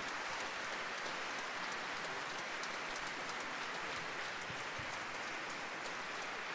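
Audience applauding: a steady, even clatter of many hands clapping.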